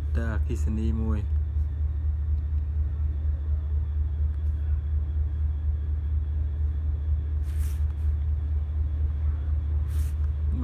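A steady low hum, with a short hiss about seven and a half seconds in.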